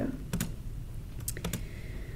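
A few short, sharp clicks, one pair about a third of a second in and a few more around a second and a half in, over a steady low hum.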